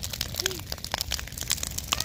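Large wood bonfire crackling, with rapid, irregular snaps and pops.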